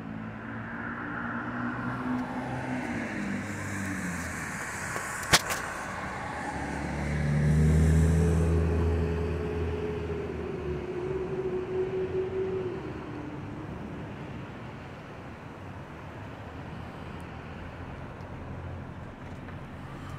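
Road traffic running nearby: vehicle engines throughout, one swelling louder in the middle and fading slowly over several seconds. A single sharp click about five seconds in.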